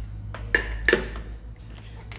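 Cups and drinking glasses clinking against each other as they are handled on a plastic tray: a few sharp, ringing clinks in the first second, the two loudest close together. A steady low hum runs underneath.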